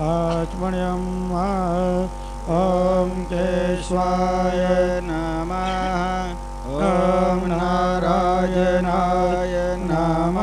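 Sanskrit mantra chanting: a voice intoning melodic phrases that rise and fall, with brief pauses between them, over a steady held drone.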